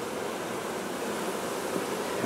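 Steady hum of a mass of honeybees on an open hive, the roaring of a colony whose queen has been taken from it.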